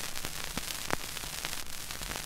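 Surface noise of a shellac 78 rpm record under the stylus: a steady hiss with scattered clicks and crackles, one sharper click about a second in.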